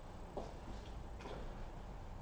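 Quiet lecture-room tone with a steady low hum and a couple of faint short clicks.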